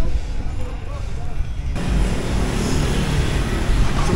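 Outdoor street noise with a heavy low rumble of wind or handling on the microphone and faint voices. About two seconds in it jumps abruptly to a louder, denser hiss of traffic and crowd noise.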